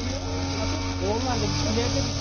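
Outdoor field sound: a steady low engine hum, with men's voices talking faintly in the background about the middle.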